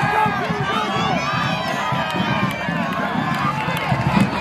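Crowd of spectators along a cross-country course shouting and cheering encouragement to passing runners, many voices overlapping.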